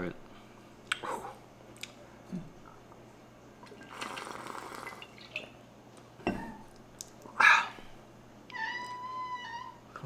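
A cat meowing: a short meow about seven and a half seconds in, then a longer, steady meow near the end. A rush of noise lasting about a second comes about four seconds in.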